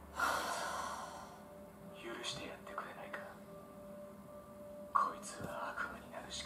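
A woman's sharp, breathy gasp just after the start, then quiet spoken dialogue from the subtitled Japanese anime episode, in short phrases.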